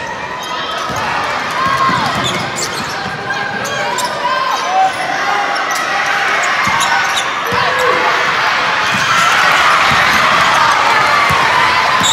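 Basketball bouncing on a hardwood gym floor amid a game, with sneaker squeaks and spectator voices. The crowd noise builds over the last few seconds.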